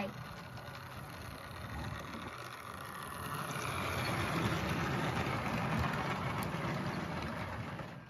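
Model railway locomotive and coaches running past on the track: the running noise of its small electric motor and wheels on the rails, growing louder to a peak about halfway through and fading as it goes by.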